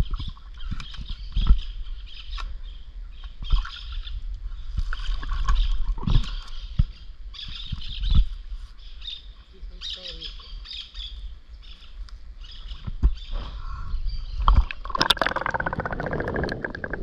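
Birds chirping over a river, with scattered knocks and bumps. Near the end a splash as the camera goes under the water, followed by bubbling.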